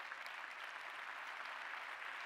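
Large conference-hall audience applauding, a steady even clapping.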